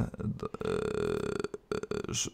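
A man's low, rough, crackling vocal sound held for about a second and a half, followed by a short hesitation sound.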